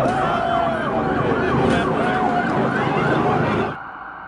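Several overlapping emergency-vehicle sirens, a jumble of rising and falling tones over a noisy street. They cut off abruptly near the end.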